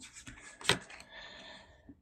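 Tarot cards handled by hand over a wooden table as the next card is drawn: a single light tap about two-thirds of a second in, then a faint brief rubbing of card.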